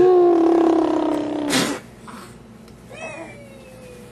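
A baby's long, high voice, held for about a second and a half and falling slightly in pitch, then a short breathy burst. A faint, thin, falling whine follows about three seconds in.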